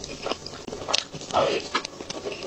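Close-miked eating of a chocolate-swirled cream cake: soft bites and wet chewing and mouth clicks in quick succession, with one louder, longer wet mouth sound a little past halfway.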